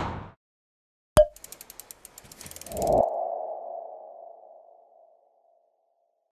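Logo sting sound effect: a sharp click about a second in, a run of quick ticks, then a swell into a single ringing tone that fades out over about two seconds.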